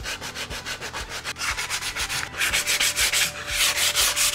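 Sheet of coarse sandpaper rubbed by hand along the rough edges of a glued block of pine boards, in quick back-and-forth strokes that grow louder about halfway through.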